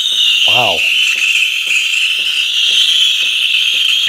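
Breville Barista Express (BES870XL) steam wand steaming a stainless jug of water: a steady, high-pitched hiss, ear piercing and really loud. A faint ticking about twice a second runs underneath.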